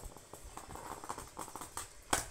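Handling noise from a hardboard clipboard held and shifted in the hands: a run of small clicks and scuffs, with scratchier rubbing in the middle.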